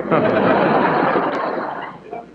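Live studio audience laughing at a punchline: crowd laughter that breaks out at once and fades away near the end, heard through an old radio broadcast recording with a dull, narrow sound.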